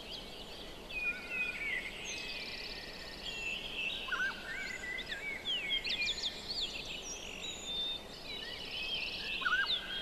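Several birds singing and calling at once: many short chirps, quick whistled glides and buzzy trills overlapping, over a soft steady background hiss.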